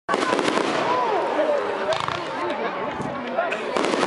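Aerial fireworks bursting overhead: several sharp bangs and crackles, with the chatter of a watching crowd running underneath.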